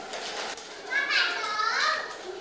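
Young children's voices in a classroom, then a young girl's high voice singing in long, gliding notes from about a second in.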